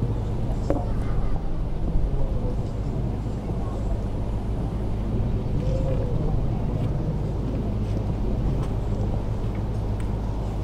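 Open-air ambience: a steady low rumble with faint, distant voices now and then.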